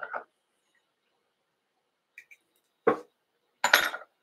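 Short clinks and knocks of small hard objects being handled on a fly-tying bench: one about three seconds in and a louder, brighter one just before the end.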